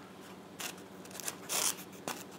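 Quiet handling noise from an EPP foam wing: foam rubbing and scuffing as a small foam piece is held against the wing's underside, with two brief scrapes, about half a second in and near the end.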